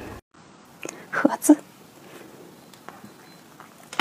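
A short soft whisper about a second in, over quiet room tone, with a few faint clicks near the end.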